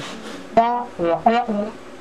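A man's voice making a wordless sound in a few short pitched notes, with a short laugh near the end.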